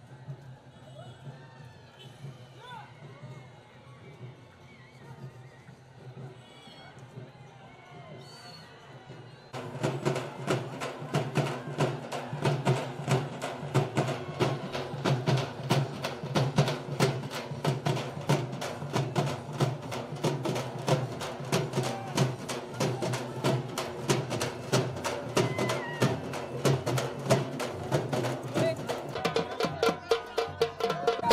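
A large flock of sheep bleating as it is driven along a street. About nine seconds in, an abrupt change to loud dhol drums beaten in a fast, steady rhythm.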